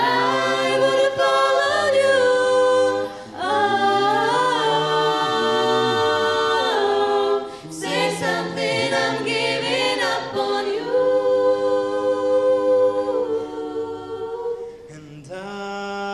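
Mixed a cappella group of women's and men's voices singing in close harmony into microphones, with no instruments: a female lead over held chords and a low male part. The voices break off briefly about three and eight seconds in and thin out, quieter, near the end.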